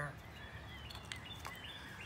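Faint outdoor background with small birds chirping now and then, high and brief, and a couple of faint ticks.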